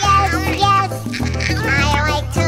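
Children's cartoon song: a high, childlike voice singing a short line over backing music with held bass notes.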